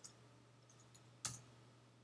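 Near silence over a faint low hum, broken by a few light ticks and one sharper click a little over a second in, from a computer mouse and keyboard in use.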